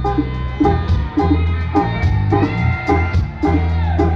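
Live band playing: electric guitar over bass and a drum kit keeping a steady beat, with a held guitar note bending down near the end.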